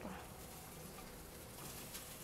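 Faint, steady sizzle of egg-battered dried fish frying in hot oil in a pan.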